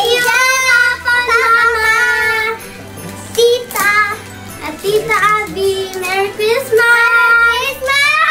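A young girl singing loudly in a high voice, holding long notes and gliding between pitches, in several phrases with short breaks.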